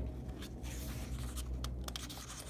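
A page of a hardcover picture book being turned by hand: paper rubbing and sliding, with a few light ticks as the page moves, over a low steady hum.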